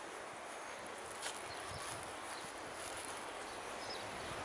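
Soft footsteps on mown grass, a few dull thuds about half a second apart, with a sharp click a little over a second in, over a steady background hiss.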